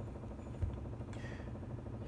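Faint handling noise of a hex key turning a screw into the aluminium base of a gimbal tripod head, with a light click about half a second in, over a steady low room hum.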